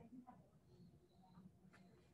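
Near silence: faint room tone in a large hall, with one faint click near the end.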